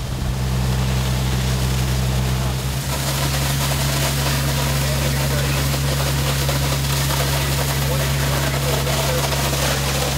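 A fire engine's pump engine running steadily at a constant pitch, with the hiss of hose streams spraying water; the hiss grows brighter about three seconds in.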